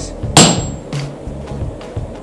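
A sledgehammer blow on a handled top tool set against a glowing steel hammer billet on the anvil: one sharp metallic strike about a third of a second in, with a brief high ring. The blow forges a trough into the high side of the hammer's cheeks.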